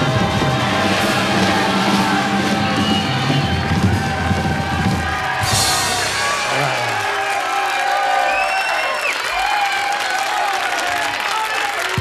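A live pop band with drums plays the closing chords of a song and stops about halfway through. A studio audience then applauds and cheers.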